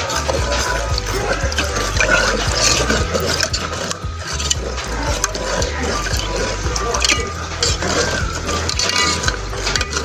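A spoon stirring a watery slurry of potassium chloride fertilizer in a metal pot, the liquid swirling and sloshing, over steady background music.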